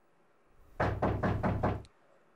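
Knocking on a door: a quick run of about seven knocks lasting about a second, starting a little under halfway in.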